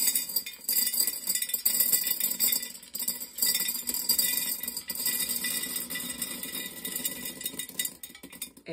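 Dry navy beans pouring from a bowl into a half-gallon glass jar: a continuous rattle of hard little beans clinking against the glass and each other. The rattle thins out near the end as the pour slows.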